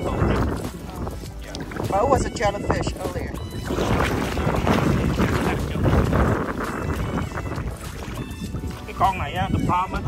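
Wind on the microphone and shallow sea water moving around a wading person's hands and legs, with voices talking briefly about two seconds in and again near the end.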